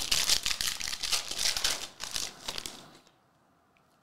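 Foil wrapper of a Panini Revolution basketball card pack crinkling as it is torn open and handled, stopping sharply about three seconds in.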